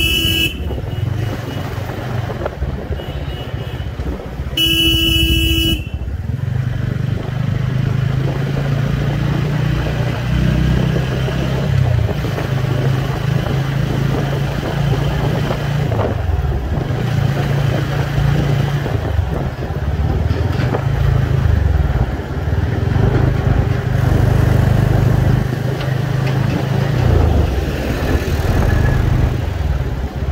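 Motorcycle engine running steadily under way in traffic, its low drone stepping up and down with the revs. A vehicle horn honks briefly at the very start and again for about a second around five seconds in.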